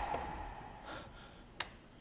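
A loud dramatic sound-effect hit fading away, then a woman's faint breath and a single sharp click.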